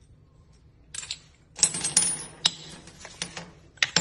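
Short pieces of ribbed steel rebar clicking and clinking against each other and a red holder as they are handled. After a quiet first second, a quick rattle of metallic clinks with a high ring follows about one and a half seconds in, then a few separate clicks near the end.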